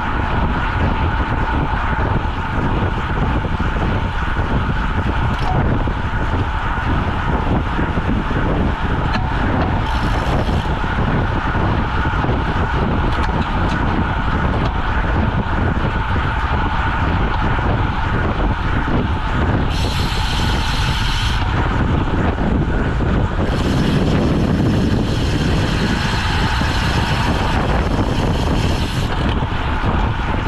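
Steady rush of wind and tyre-on-asphalt noise picked up by a camera mounted on a road bicycle moving at about 23 to 31 mph. A higher hiss comes in briefly about twenty seconds in and again for several seconds near the end.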